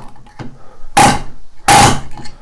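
Central Pneumatic mini air palm nailer driving a large nail into a board in two short, loud bursts, about a second in and near the end, each with a ringing tone. The nail is going in well.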